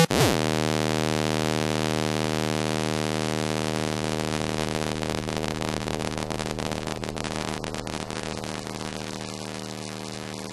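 Psytrance breakdown: a single held synthesizer drone on one note, steady and without a beat, slowly getting quieter. A short falling sweep comes at the very start.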